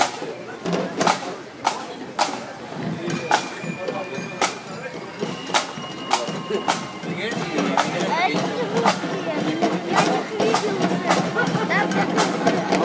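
A drum beating a steady marching beat, about two strikes a second, under the chatter of a crowd.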